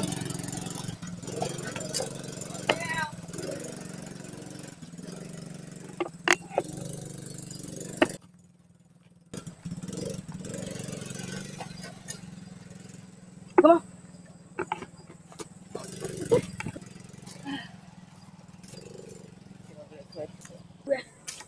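Small youth ATV's engine running steadily at low revs as it is ridden across a grassy yard, with a few brief calls from people nearby. The sound drops out for about a second near the middle.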